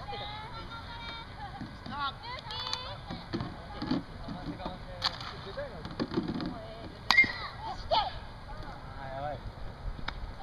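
A softball bat striking the ball once, a sharp crack about seven seconds in, with scattered voices of players talking around it.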